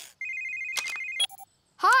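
Cartoon handheld video phone (the Pup Pad) ringing with a rapid, high electronic trill for about a second, cut off by a click and a short beep as the call is answered.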